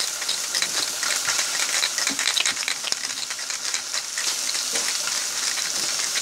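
Small objects rattling and clicking as they are shaken and handled, over a steady crackling hiss.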